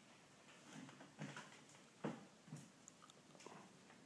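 A few faint knocks and clunks, the sharpest about two seconds in, as a manual wheelchair is wheeled off a metal lift platform and over the threshold of a travel trailer's doorway.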